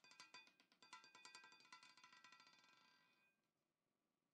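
Roulette ball clattering in the spinning wheel as it drops into the numbered pockets: a rapid run of sharp clicks with a metallic ring, fading out about three seconds in as the ball settles.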